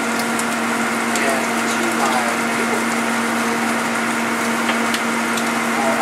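Shrimp frying in a smoking-hot wok pan, oil crackling and spitting steadily, over a constant low hum.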